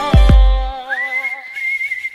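A K-pop ballad plays with two deep bass-drum hits at the start. The backing then drops away, leaving a single thin high note that slides up about a second in and holds.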